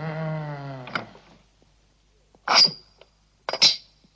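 A man's low groan lasting about a second, the creature moaning as it comes round on the laboratory table. It is followed by two short, sharp, loud sounds about a second apart.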